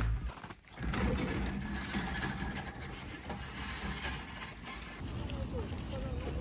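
Outdoor city-park ambience: a steady low rumble like distant traffic or wind, with faint voices of passers-by near the end.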